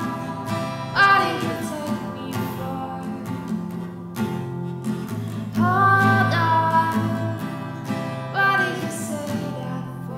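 Acoustic guitar with a woman singing long wordless notes over it, the music fading near the end.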